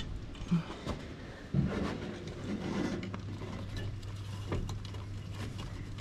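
A coil spring being hooked into a loader wagon's knife bank by a gloved hand: scattered small metallic clicks and rustling of cut grass. A steady low hum comes in about one and a half seconds in.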